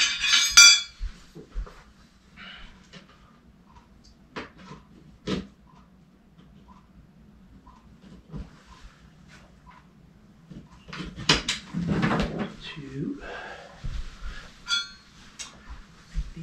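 Thin titanium hoop spars of a paramotor cage clinking and ringing against each other as they are picked up, then scattered light clicks and knocks as they are handled and fitted into the frame. Another ringing metal clink comes near the end.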